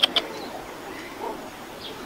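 Faint bird calls over a quiet outdoor background, with a brief run of sharp chirps right at the start.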